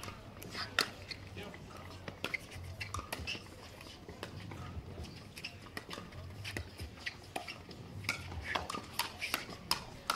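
Pickleball paddles striking a plastic ball in a fast rally: a quick, irregular string of sharp pocks as the players dink and counter at the net.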